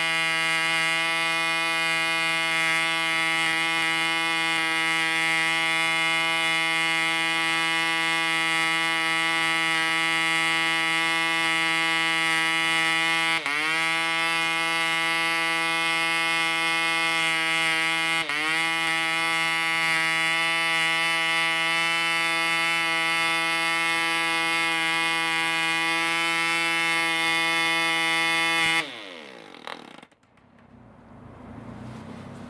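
P.A.W. 2.49 cc two-stroke model diesel engine running with a 9x4 propeller at just under 10,000 RPM, a steady high note, running sweetly. Its pitch dips briefly twice, about halfway through and again a few seconds later. Near the end the engine cuts out suddenly.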